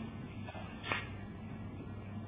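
A rubber examination glove snapping as it is pulled on: one sharp snap a little under a second in, with a smaller one just before it, over a steady low hum.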